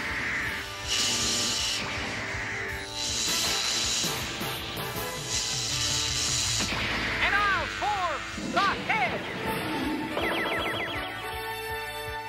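Cartoon sound effects of the giant robot Voltron forming from its lion parts over background music: three bursts of noise about a second long each, then a run of swooping electronic zaps in the second half.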